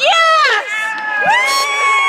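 A spectator's high-pitched cheering yell, close and loud: a short yell falling in pitch at the start, then, just over a second in, a long high yell held steady.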